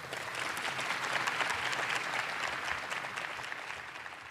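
Audience applauding, the clapping building over the first second or two and thinning out near the end.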